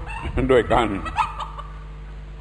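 A short chicken call about a second in: one brief note that glides up and then holds level, fainter than the voice before it.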